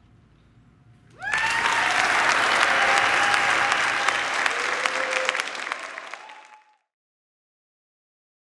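Audience applauding loudly, breaking out about a second in with a few voices calling out over the clapping. It tails off after about five seconds.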